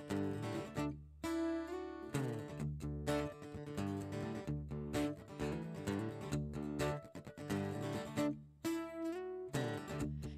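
Solo acoustic guitar strummed in a song's instrumental introduction: chords rung out in a steady pattern, with brief breaks about a second in and near the end.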